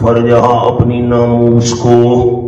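A man's voice reciting a Quranic verse in Arabic in a chanted, melodic style, holding long steady notes.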